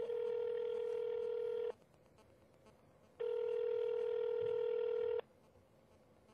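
Telephone ringback tone heard over the line: two long, steady beeps of about two seconds each, a second and a half apart, as the call rings at the other end and waits to be answered.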